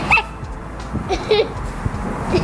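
A small dog yipping: a few short, high-pitched yelps.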